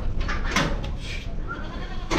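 Goats bleating in short calls, over a steady low background rumble.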